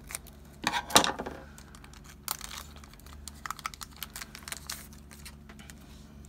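A Pokémon card booster pack's foil wrapper being torn open and crinkled, the loudest rustle about a second in, then scattered clicks and rustles as the cards inside are handled.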